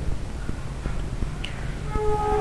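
A pause in a man's speech: a steady low hum with a few faint clicks, and a short faint pitched tone near the end.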